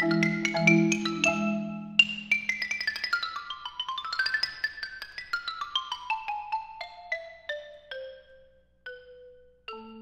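Marimba ensemble playing with low rolled notes underneath. About two seconds in the accompaniment drops out, leaving a solo xylophone playing a fast run of notes that climbs and then descends. The run slows to a held low note near the end before the ensemble comes back in.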